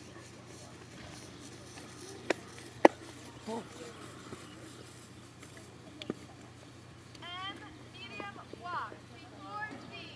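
Two sharp clicks about half a second apart, the second the louder, followed by a brief "oh" and a laugh.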